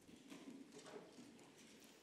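Near silence: room tone with a few faint, irregular clicks and knocks of handling at a lectern.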